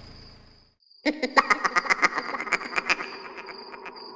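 A cartoon sound effect of fast clattering, about ten sharp clicks a second, starting about a second in as the music dies away and thinning out toward the end. A faint high steady tone runs underneath.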